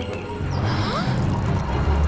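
Cartoon sound effects of a water balloon being filled: a low rumble with a couple of short rising squeaks about a second in, over background music.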